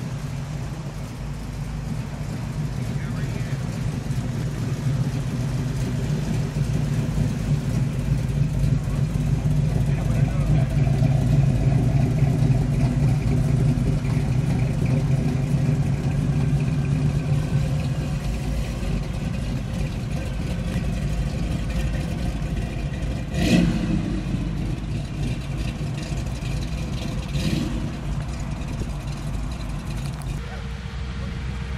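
Classic cars' engines running at low speed as they roll by one after another, a Chevrolet C10 pickup and then a first-generation Camaro, the engine sound swelling through the middle and easing off. Two short sharp sounds stand out near the end, the first the loudest moment.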